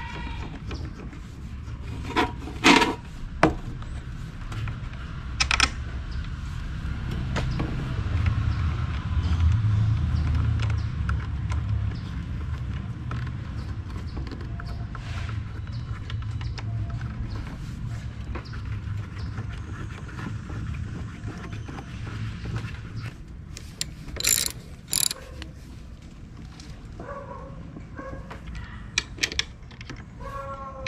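Scattered metal clinks from a scooter's front brake caliper bolts and hand tools as the caliper is bolted back on, over a low steady rumble. Near the end a ratchet wrench starts clicking as a bolt is tightened.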